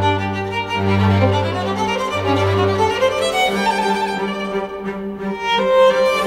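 Background music: a sustained violin melody over held string notes, with a deep bass note that drops out about halfway through.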